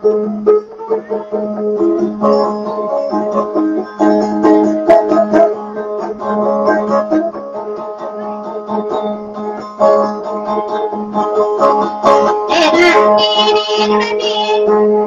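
Kutiyapi, the Maranao two-stringed boat lute, playing a quick plucked melody over a steady drone note. Near the end there is a brief shrill sound above the music.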